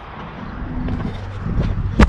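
Handling noise from the quad's onboard camera as the quadcopter is carried into a car's cargo area: rumbling, rustling and light scrapes over a low steady hum, growing louder, with a sharp knock right at the end as it is set down.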